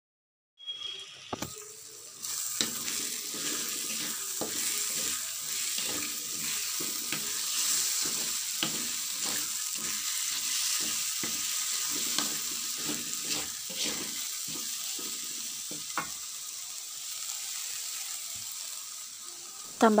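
Blended chilli spice paste sizzling as it is sautéed in hot oil in a wok, with a metal spoon scraping and knocking against the pan many times as it is stirred. The sizzle eases a little near the end.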